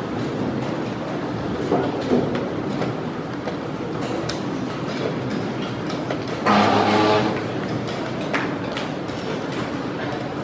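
Fast chess play: a few sharp clicks of wooden pieces set down on the board and chess clock buttons pressed, over a steady background din. The loudest sound is a brief pitched drone lasting under a second, about two-thirds of the way in.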